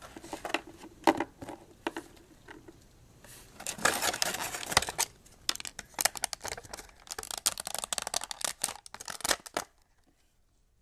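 Plastic toy packaging crinkling and tearing as it is worked apart by hand: a few scattered crackles at first, then a dense run of crinkling from about three and a half seconds in until just before the end.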